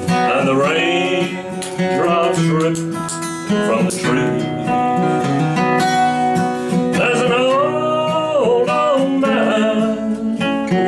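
A man singing a slow country song to his own acoustic guitar accompaniment, holding one long note about seven seconds in.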